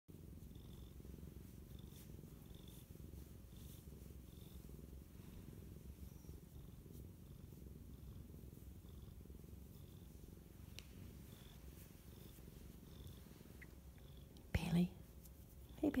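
Domestic cat purring steadily at close range while being stroked. About a second and a half before the end there is one short, louder sound.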